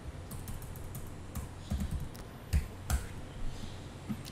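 Typing on a computer keyboard: a scattered run of soft key clicks, with a few sharper keystrokes in the second half.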